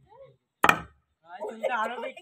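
One sharp hammer blow on a nail in a wooden plank, followed by several people shouting and laughing.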